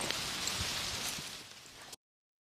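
Steady outdoor background hiss with no distinct events, fading out gradually and cutting off just before the end.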